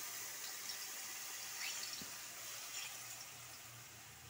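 Tamarind water poured from a steel vessel into a hot pan of fried shallots and spices, a steady splashing pour that slowly fades.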